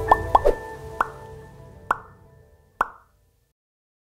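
Channel outro ident: short popping sound effects over fading music, a quick run of pops in the first half second, then single pops about a second apart, ending about three seconds in.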